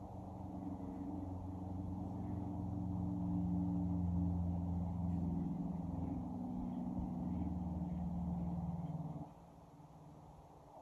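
A low, steady droning hum of several held tones that swells slightly and then cuts off about nine seconds in.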